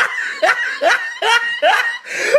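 A person laughing in a run of about five short laughs, each rising in pitch.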